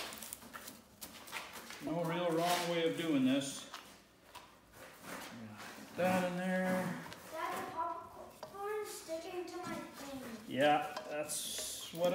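Voices talking, over scattered scraping and rustling as a spoon stirs popcorn in a plastic pail and a spatula scrapes a sticky mix out of a pan, with a short burst of scraping near the end.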